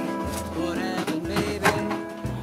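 Background acoustic string-band music: guitar over a plucked bass line.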